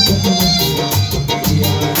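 Live band playing music with a steady beat: drum kit and percussion over a repeating bass line, loud and continuous.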